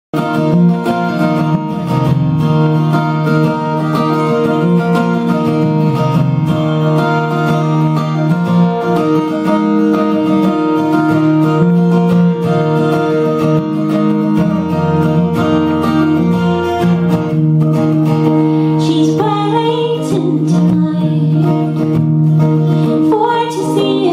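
Acoustic guitar intro played on a cutaway acoustic guitar, steady chords shifting every second or two. A woman's voice comes in faintly near the end, ahead of the first sung line.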